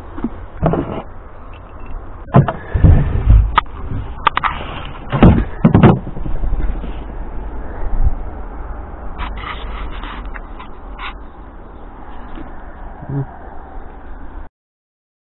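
Knocks and clattering bumps of scrap being handled, with footsteps on a yard path. They come in two loud clusters, about three and six seconds in, with lighter clicks later, over a steady low rumble.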